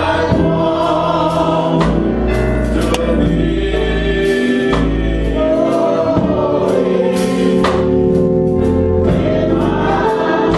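Live gospel song in church: a choir and congregation singing with instrumental accompaniment, long held notes over deep sustained bass notes and occasional sharp percussive strikes.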